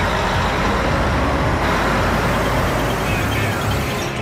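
A tracked armoured vehicle driving over rough ground, with steady engine and track noise.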